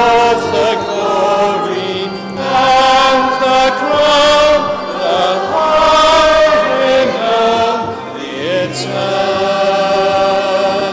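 Voices singing a slow hymn, with long held notes in phrases of a few seconds.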